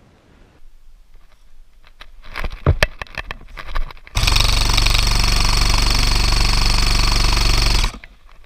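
Airsoft electric rifle (AEG) firing one long full-auto burst, a fast, even rattle that starts abruptly about four seconds in and stops sharply just before the end. Before it come a few scattered knocks and handling clicks.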